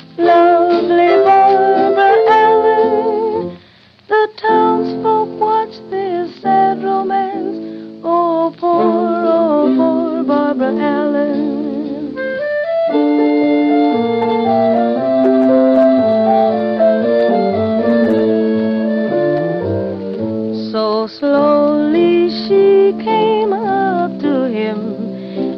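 A vintage jazz-band recording plays a melody with vibrato over sustained band chords, between the sung verses. It drops away briefly about four seconds in.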